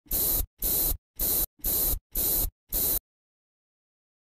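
Aerosol spray can hissing in six short, even sprays, about two a second.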